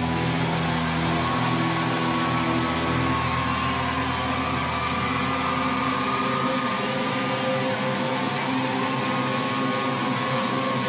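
Electric guitars of a live rock band holding long, ringing notes with no drums, a few notes sliding slowly in pitch; the deep bass drops out about two-thirds of the way through.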